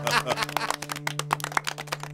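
A quick, irregular run of light clicks and taps, about ten a second, over a steady low held hum.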